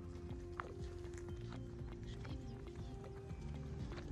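Background music with sustained low notes and light, irregular clicking percussion.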